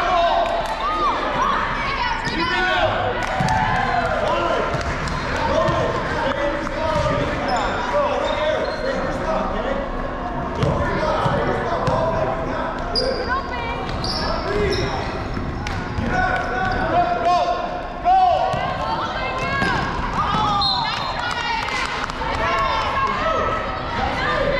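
Basketball game on a hardwood gym floor: the ball bouncing as it is dribbled, sneakers squeaking, and players' and spectators' voices calling out, all echoing in the large hall.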